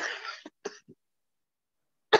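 A person clearing their throat: a short harsh burst at the very start, then two brief smaller sounds just after.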